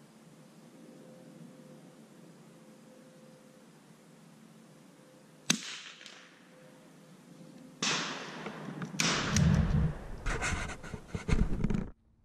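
A single sharp crack of a .22 long rifle target rifle shot about five and a half seconds in, with a short ring after it. From about eight seconds, rustling and heavy thumps and knocks of handling close to the microphone.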